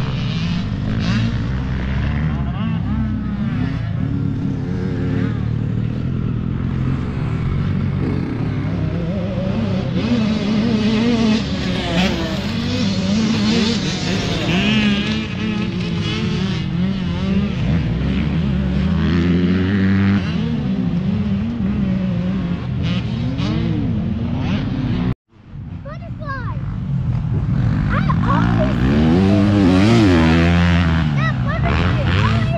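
Several motocross dirt bikes running on the track at once, their engines revving up and dropping off again and again as riders go through the turns and jumps. The sound cuts out for a moment about 25 seconds in, then one bike gets steadily louder as it approaches and passes close near the end.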